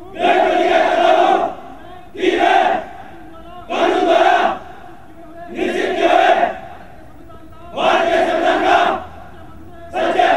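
Massed soldiers' voices shouting in unison: five shouts, each about a second long, come roughly every two seconds with quiet gaps between, and a sixth begins at the very end.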